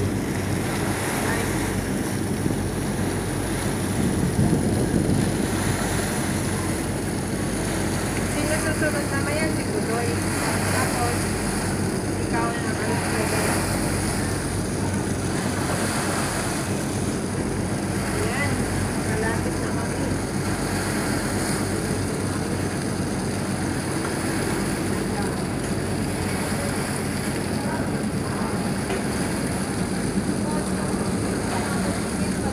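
A ferry's engine running steadily underway, a low, even drone mixed with the rush of water along the hull and wind buffeting the microphone.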